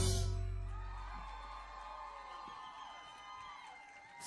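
A live band's final chord dies away after the last hit, its low bass note ringing down over about three seconds. Faint cheers and whoops from the audience rise over it.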